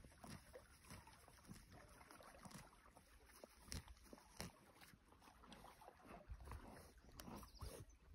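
Faint, irregular crunching and tearing of a yearling horse colt grazing close by, pulling up grass and chewing it.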